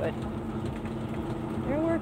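Semi-truck engine running steadily, heard from inside the cab, with road noise from a rough, bumpy gravel road.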